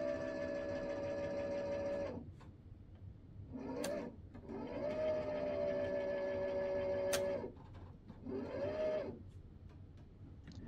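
Electric linear actuator motor whining as it drives the rod to its preset positions: two longer runs of about two and three seconds, each rising briefly at the start, then holding a steady tone that cuts off, with two short runs between and after. A couple of sharp clicks come with the runs.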